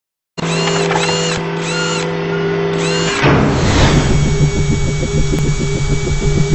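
Electronic intro sting for a logo animation: a steady buzzing drone with a repeated arching synthetic sweep, then a whoosh about three seconds in giving way to a fast, rhythmic buzzing pulse.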